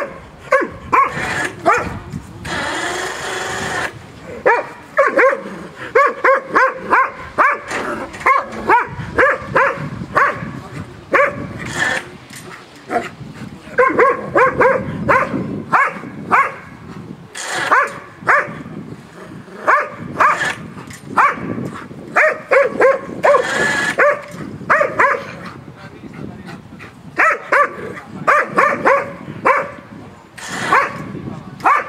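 East Siberian Laika barking at a caged animal: rapid runs of short, sharp barks broken by brief pauses, with a few longer noisy bursts mixed in.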